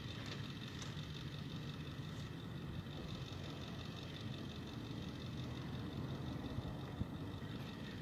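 Quiet outdoor background: a steady low rumble with no speech, and a small click about seven seconds in.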